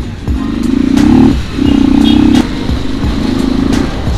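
Modified Royal Enfield Classic 350's single-cylinder engine with an aftermarket exhaust, accelerating under a rider: the note rises in pitch for about a second, breaks briefly, comes back louder and steady, then runs quieter in the last second and a half. Background music with a beat plays underneath.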